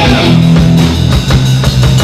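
Live rock band playing: electric guitar over a Pearl drum kit, with sustained low notes and a steady drum beat.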